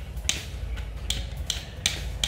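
Short sharp plastic clicks, about four in two seconds, as the hinged plastic frame of a GoPro Media Mod camera housing is handled and flexed.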